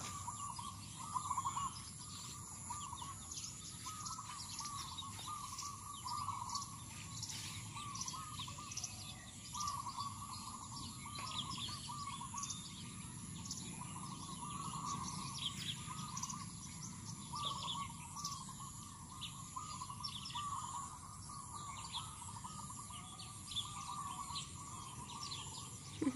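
Birds calling in the trees: a short warbling phrase repeated every second or two, with scattered high chirps over it and a steady high-pitched hum underneath.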